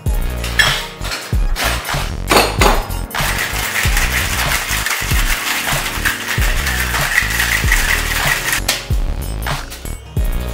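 Background music with a steady beat. About three seconds in, ice is shaken hard in a copper cocktail shaker, a dense rattle lasting about five seconds that stops shortly before the end.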